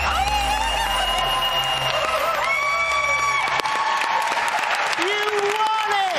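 Studio audience applauding and cheering, with high shouts over the clapping, and a low bass line of music under it that stops a little past halfway.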